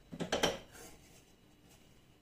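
Rim of a chocolate egg half rubbed against a hot nonstick frying pan to melt it: a few short scraping clicks in the first half-second.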